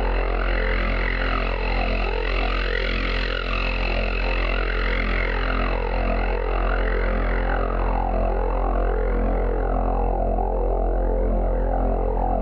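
Experimental electronic drone music: a steady, deep hum with many stacked tones, over which a filtered, noisy layer sweeps up and down in pitch about every two seconds.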